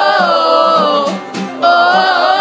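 A group of voices singing a song together, holding long notes that bend in pitch, over a steady beat. The singing breaks off briefly about a second and a half in, then picks up again.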